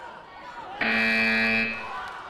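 Electronic match buzzer sounding one steady tone for just under a second, starting about a second in: the signal for the end of a taekwondo round, over background voices in the hall.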